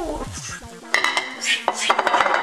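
A few sharp clicks and light knocks on a kitchen countertop as spilled crumbs are wiped up by hand and with a cloth.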